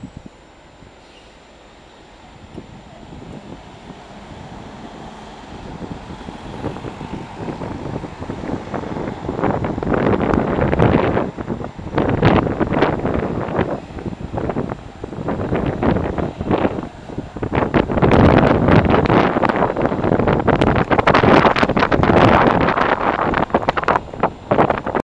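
Road traffic and buses passing in the street, growing louder, with loud, irregular wind buffeting on the camera microphone through the second half.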